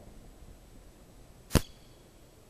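A single sharp knock, very short and loud, about one and a half seconds in, over faint background noise.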